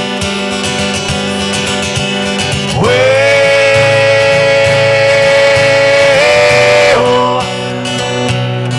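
Acoustic guitar playing chords under a man's singing voice. The voice slides up into one long held note about three seconds in and holds it for about four seconds.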